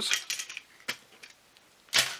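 Plastic parts of a disassembled slot-car hand controller being handled and picked up off a workbench: light clicks and rattles, a sharp click about a second in, and a brief louder rustle near the end.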